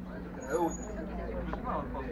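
Voices of people talking close by, one rising briefly and loudest about half a second in, over the steady low rumble and hum of an electric scooter rolling on stone paving.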